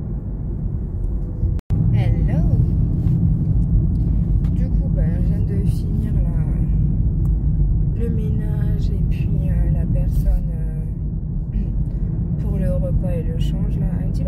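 Steady low rumble of a car's engine and tyres heard from inside the cabin while driving. It cuts out for an instant just under two seconds in, then carries on.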